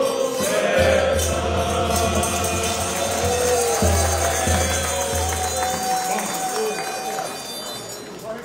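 Live folk music on piano accordion and bass drum, with a group of men singing along. Near the end the accordion holds a long final note that stops about seven seconds in, as the song ends.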